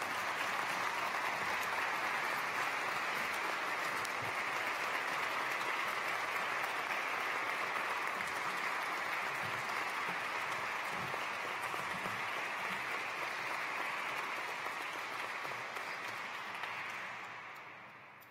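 An audience applauding steadily, the clapping dying away near the end.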